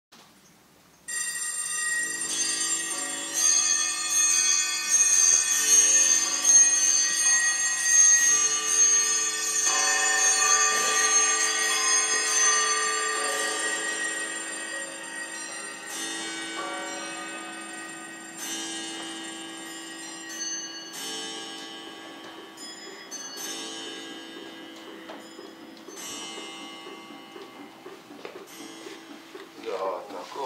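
Music of chiming bell tones that starts suddenly about a second in. Many ringing notes overlap, with new strikes every couple of seconds, and the sound slowly fades in the second half.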